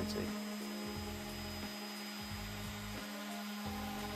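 Electric random orbital sander running steadily with its pad on a pine board, a constant motor hum under the rasp of the sanding disc.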